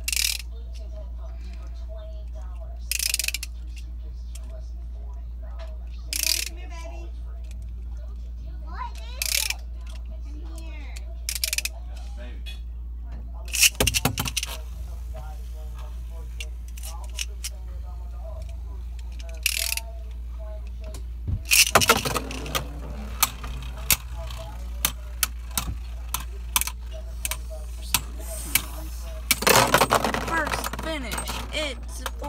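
Beyblade spinning tops launched with ripcord launchers into a plastic stadium dish. Sharp short rasps come every few seconds at first, with a loud launch and clatter about 14 s in and again about 22 s in. After that comes a quick run of clicks and knocks as the tops collide with each other and the stadium walls.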